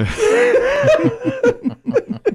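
Men laughing hard: one long, wavering laugh that breaks into a quick run of short ha-ha pulses near the end.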